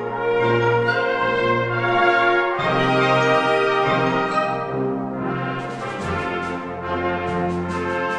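Symphonic wind band playing full, held brass chords, with a run of sharp accented percussive hits in the last couple of seconds.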